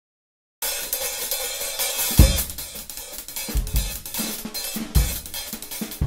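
Acoustic drum kit played live, starting abruptly about half a second in: a steady wash of cymbals and hi-hat, with a handful of bass drum hits from about two seconds in.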